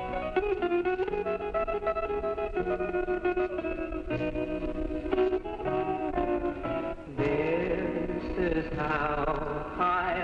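Country music from a home recording played back on reel-to-reel tape: a guitar-led instrumental passage, with gliding, wavering notes coming in about two-thirds of the way through.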